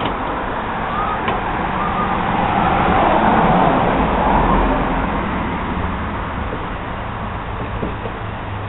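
Steady rushing noise of road traffic, swelling a few seconds in as if a vehicle passes, then easing off.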